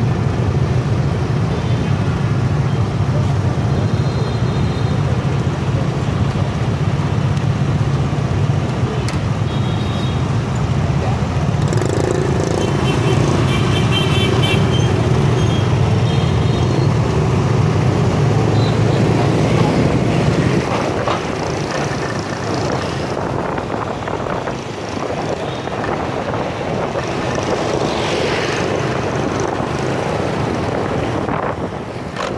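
Motorbike and scooter engines idling together in a crowd of traffic waiting at a junction, a steady low hum that gives way about two-thirds of the way in to the rougher sound of riding along through street traffic.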